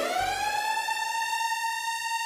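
Electronic tone that glides up in pitch at the start, then holds one steady, even note.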